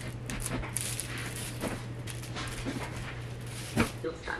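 A wicker laundry basket full of clothes creaks and rustles as it is carried and handled, over a steady low hum, with a sharp knock near the end.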